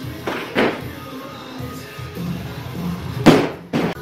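Two impacts from a barbell loaded with bumper plates: a thud about half a second in, and a louder one with a quick second hit just after three seconds, as the bar comes back down to the wooden platform. Rock music plays throughout.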